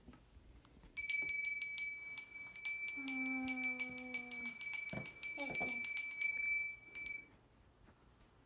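A small hand bell rung rapidly and continuously for about six seconds, with bright high ringing tones, stopping a little after seven seconds in. Midway through, a child's voice holds one long note over the ringing.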